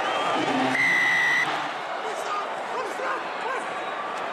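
Rugby referee's whistle: one steady blast of under a second, about a second in, over the hubbub of a stadium crowd.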